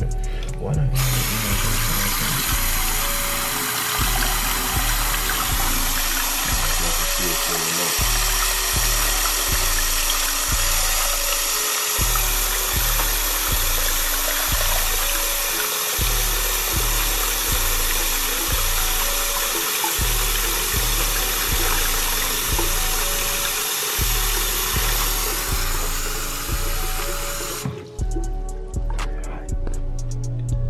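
Bathroom tap running steadily into a sink and splashing over a plastic pregnancy test held in the stream. The water starts about a second in and stops just before the end. Background music with a steady, repeating beat plays underneath.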